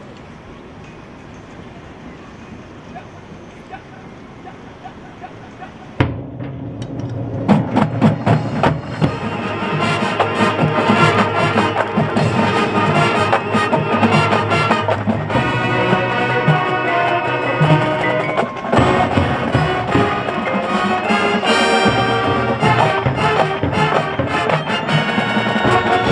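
A high school marching band starts its field show about six seconds in with a sudden loud hit, then plays on with brass chords over the drumline and front-ensemble mallet percussion. Before it starts there is only low, steady background noise.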